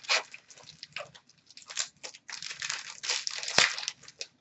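Foil hockey card pack wrapper crinkling and tearing in the hands as the pack is opened, in irregular bursts, with a sharp tap about three and a half seconds in.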